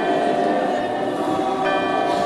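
Choir chanting in long held notes, with the pitch shifting once about one and a half seconds in.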